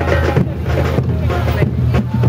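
Wind rumbling on the microphone over a steady low hum, with voices and music mixed in.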